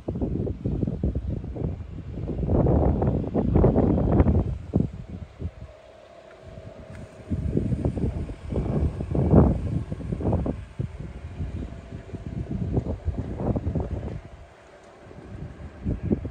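Wind buffeting the microphone in irregular gusts of low rumble, easing off briefly twice.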